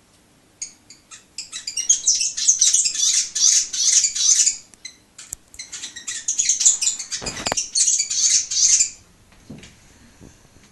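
New Zealand fantail (pīwakawaka) chattering in rapid, high, squeaky chirps. It sings in two long runs with a short break about halfway and stops about a second before the end. A brief low thump sounds about seven seconds in.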